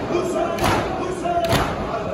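A large crowd of mourners beating their chests in unison (matam), a heavy collective slap about every second, twice here, over voices chanting.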